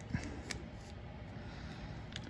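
Faint clicks and rubbing of hard plastic action-figure parts being handled, as a small gun accessory is pressed into the figure's hand, with a couple of tiny clicks in the first half second.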